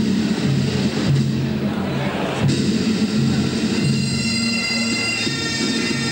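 Bagpipe music starts up, with high, reedy pipe tones coming in strongly about four seconds in.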